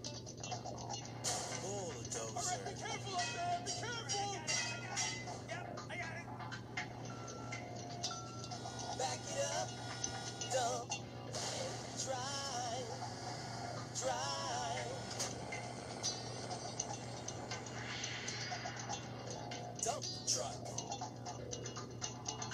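Children's TV song about construction vehicles, sung over music and played back through a tablet's small speaker, with a steady low hum underneath.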